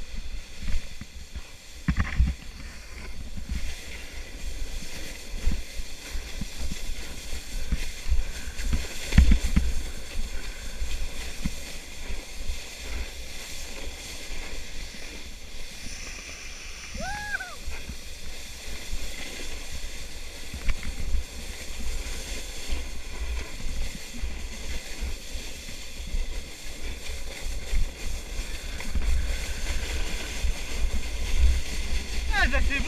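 Plastic sled sliding fast over packed snow: a continuous scraping hiss of the sled base on the snow with heavy wind rumble on the microphone, and a few louder knocks, the strongest about two and nine seconds in.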